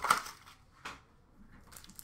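Trading cards and packs being handled on a glass counter: a sharp knock just after the start, then a fainter tick a little under a second later.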